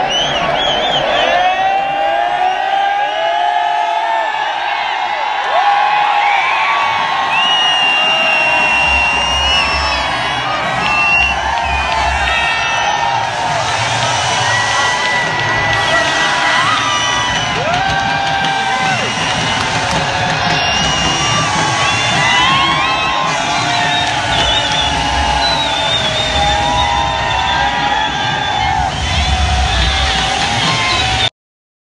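Large stadium crowd cheering, shouting and whistling in celebration of the winning runs, with music over the loudspeakers.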